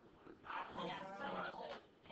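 Faint, indistinct voices talking in the background, not close to the microphone.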